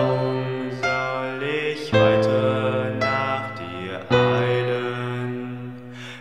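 Piano playing slow chords, a new chord struck about every two seconds and left to ring out, with softer notes in between.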